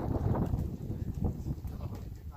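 Footsteps on stony rubble, with wind buffeting the microphone as a low rumble.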